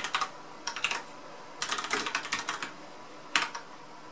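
Typing on a computer keyboard, entering commands at a Linux terminal: short runs of quick keystrokes with brief pauses between, the longest run about halfway through.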